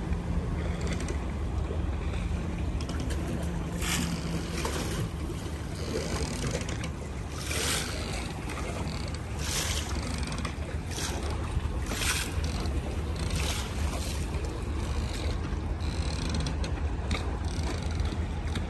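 Mercury outboard motor running steadily at low speed, a low hum, with water splashing at the boat's stern in several short bursts.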